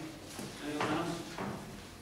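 Indistinct speech in a meeting room, a few short phrases too unclear to make out, loudest around the middle.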